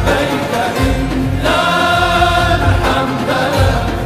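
Male chorus singing a devotional melody in unison, holding a long note in the middle, over deep beats on a large frame drum.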